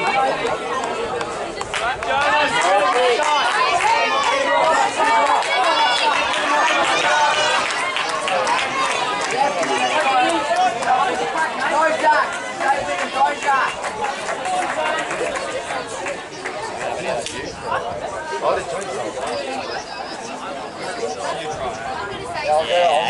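Chatter of several spectators talking over one another close by, no single voice clear. It is loudest in the first half and grows softer later on.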